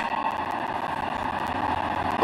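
Steady background noise of a large hall: an even hum and hiss with no distinct events.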